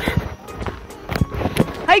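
Footsteps of a person walking on a dirt path: a few uneven thuds.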